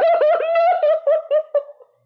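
A woman screaming in terror, a high scream broken into a rapid run of short pulses that slides slightly down in pitch and dies away near the end.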